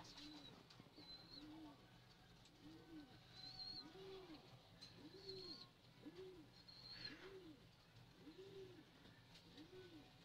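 Domestic pigeon cooing softly: a steady run of short, low coos, each rising then falling in pitch, a little under one a second.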